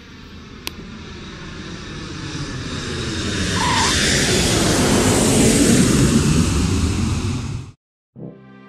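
Boeing 777 jet airliner landing: a broad rushing engine roar that builds over several seconds as it touches down and rolls out, then cuts off suddenly near the end.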